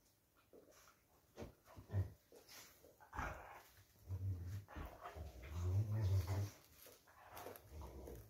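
Two dogs play-fighting, one growling low in several bouts, the longest and loudest from about five to six and a half seconds in, with short scuffling sounds between the growls.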